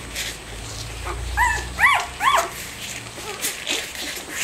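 Newborn border collie puppies squeaking and whimpering: three short squeals that rise and fall about a second and a half in, with fainter squeaks around them.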